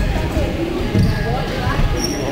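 Two low thumps of BMX bike tyres on the skatepark ramp, about a second in and again near the end, over voices in the background.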